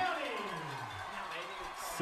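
A man's voice sliding down in pitch and trailing off over the first second, then faint background with a few steady tones.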